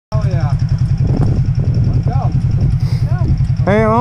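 Honda sport ATV engine idling close by, a steady pulsing low rumble, with voices over it and a man talking loudly near the end.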